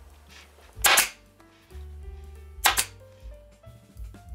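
Pneumatic upholstery stapler firing twice, about a second in and again roughly two seconds later, each shot a sharp snap of air as it drives a staple through the vinyl cover into the seat's plastic base.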